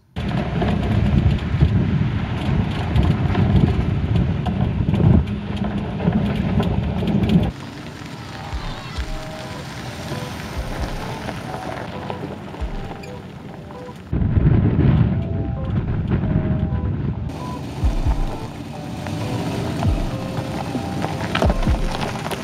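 Low rumbling noise that cuts off abruptly about seven seconds in and comes back abruptly around fourteen seconds in, over faint background music.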